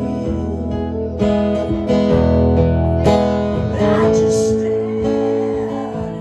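Two acoustic guitars strummed together in a live song, chords ringing steadily.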